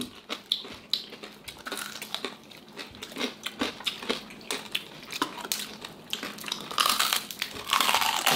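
Crispy fried pork knuckle skin crackling as it is pulled apart by hand, a scatter of sharp cracks, then a denser run of crunching near the end as a piece is bitten.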